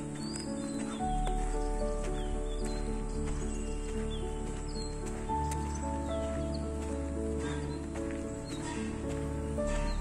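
Instrumental background music of held notes over a deep bass that comes in about a second in, with short high bird chirps above it.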